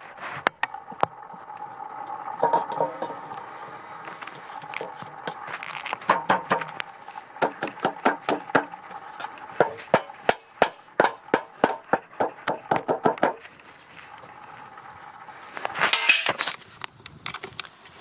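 Quick light taps on a small seed box, a couple a second for several seconds, knocking out Cape sundew seeds that stick to it. A faint steady hum runs underneath, and a short rustle comes near the end.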